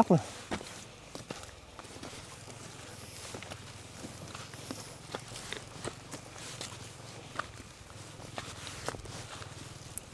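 Footsteps of several people in sandals walking up a dry dirt trail: faint, irregular steps.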